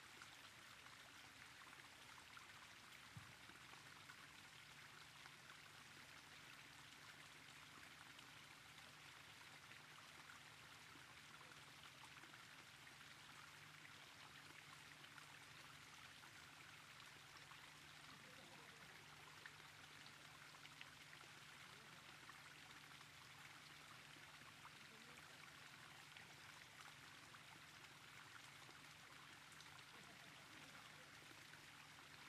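Near silence: a faint, steady hiss with a low hum underneath.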